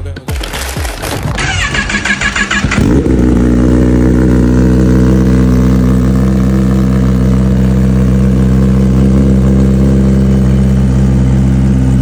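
Kawasaki ZX-10R's inline-four engine, fitted with an M4 exhaust and its catalytic converter deleted, starting up: it cranks for about a second and a half, catches about three seconds in with a quick rise in pitch, then settles into a loud, steady idle.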